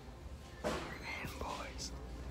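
A person whispering briefly, starting about half a second in, over a low steady hum.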